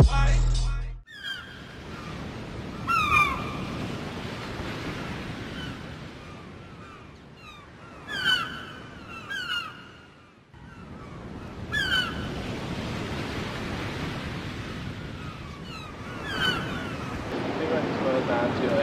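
Ocean surf washing steadily on a beach, after a burst of hip-hop music that cuts off about a second in. Short falling bird calls ring out over the surf about five times, and the sound drops out briefly near the middle.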